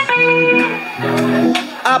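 A live band plays two held chords in a row, each under a second long, on what sounds like electric guitar. A man's voice over the PA comes back just at the end.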